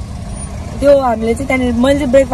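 Steady low rumble of a car heard from inside the cabin, with a woman's voice talking over it from about a second in.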